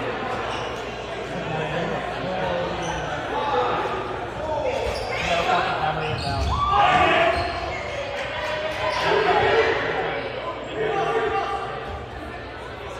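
Dodgeballs thudding and bouncing on a gymnasium floor amid players' shouts and calls, all echoing in the hall; one louder, rising shout comes just before seven seconds in.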